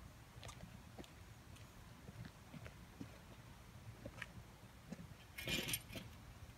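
Faint footsteps of sneakers on an asphalt driveway, soft steps about every half second, with a louder scraping rustle near the end.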